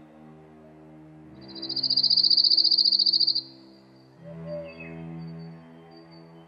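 Slow, sombre background music of sustained low chords. About a second in, a loud, high cricket trill, a rapid pulsing chirp, starts over it, runs for about two seconds and stops abruptly.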